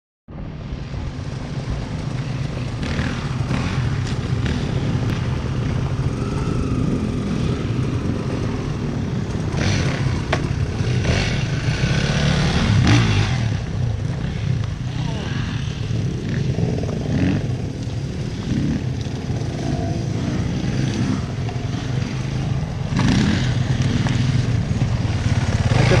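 Enduro dirt-bike engines idling in a queue, the engine sound swelling and easing off now and then, with voices in between.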